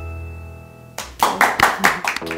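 Background music holding a sustained chord, then a quick run of about six hand claps in the second half.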